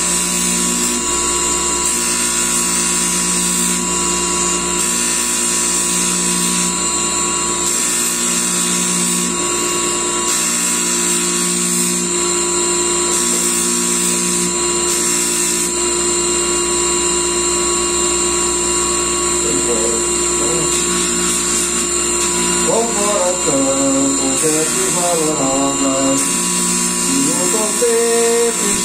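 Bench polisher, a buffing wheel on an electric motor shaft, running with a steady whine while a metal firearm part is polished against it. A man's singing voice joins near the end.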